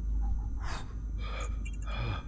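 A man gasping and breathing sharply several times, over a low steady drone.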